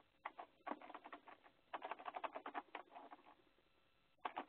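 Faint, quick clicks and taps in irregular runs, the densest about two seconds in.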